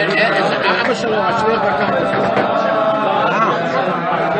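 Several people's voices talking over one another in a large hall, a steady overlapping chatter with no single clear speaker.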